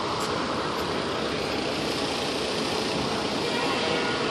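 Steady engine noise from idling fire apparatus mixed with city street noise.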